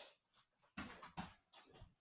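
Near silence: quiet room tone, with two faint brief rustles about a second in.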